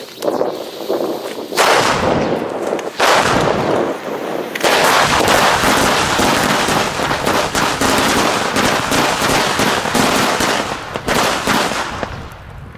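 A Keller firecracker chain going off: a dense, rapid string of bangs that starts about one and a half seconds in, thins briefly twice, and runs on until it stops shortly before the end.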